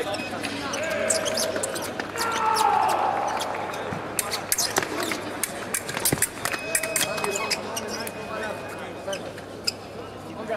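Foil fencing bout: the fencers' feet stamp and tap on the piste, with sharp clicks of blades meeting, over voices in a large hall. A short steady electronic tone sounds about six and a half seconds in and again near nine seconds.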